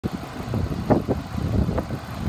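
5.7-litre V8 of a 2019 Dodge Charger police car idling, heard as an uneven low rumble with a few short knocks.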